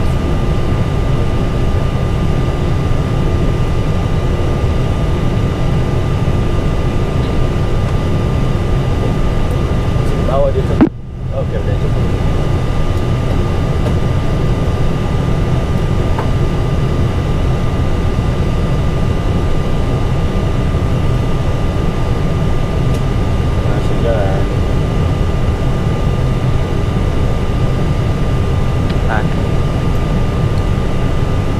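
Steady cockpit noise of an Airbus A320 standing with both engines idling: a low rumble and air-conditioning hiss with several constant high tones. The sound drops out suddenly for about a second roughly eleven seconds in.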